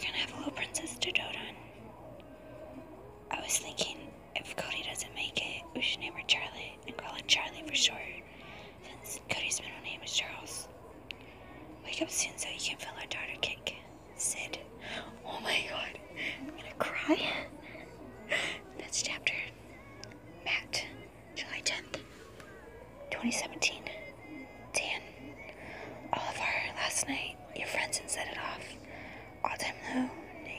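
A person whispering speech in a steady run of words, with strong hissy sibilants.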